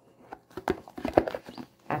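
Oracle card deck handled in its cardboard box as it is opened and the cards are taken out: a string of irregular light taps and clicks, the strongest about a second in.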